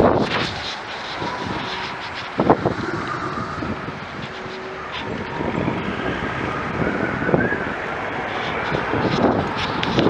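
Wind rushing over the microphone of a bicycle-mounted camera while riding in car traffic, with a few sharp knocks, the loudest about two and a half seconds in.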